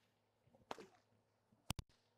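Stock whip cracking: a faint snap about two-thirds of a second in, then two sharp cracks in quick succession near the end.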